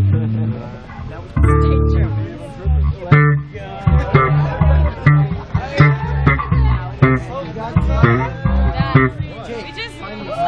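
Live band playing electric bass and electric guitar with drums, heard loud and close on stage.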